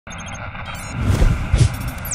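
Animated logo intro sound effects: four quick high electronic beeps, then a steady rushing noise with two deep booms about a second in.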